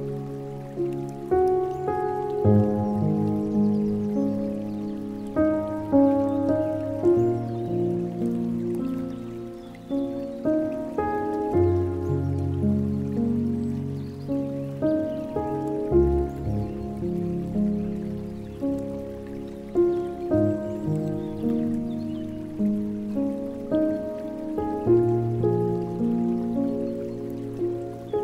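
Slow, calm solo piano music, single notes struck over low held chords, with a soft patter of falling water underneath.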